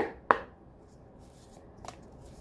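A deck of tarot cards being shuffled by hand: two sharp card snaps about a third of a second apart at the start, a fainter one near the end, and soft handling in between.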